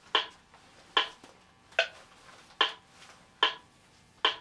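Metronome clicking a steady beat at 73 beats a minute, five evenly spaced clicks.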